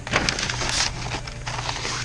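Paper pages of a spiral-bound instruction manual rustling and crackling as they are flipped through, busiest in the first second, over a steady low hum.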